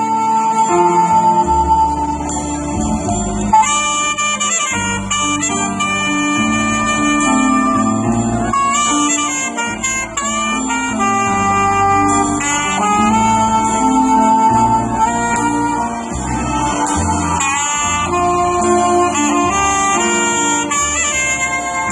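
Live Bollywood instrumental played on drum kit, electronic keyboard and saxophone, the saxophone carrying the melody over keyboard chords and a steady drum beat. The melody line grows busier about four seconds in.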